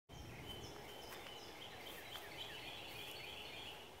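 Faint outdoor ambience of small birds chirping in many quick, short notes over a low, steady rumble.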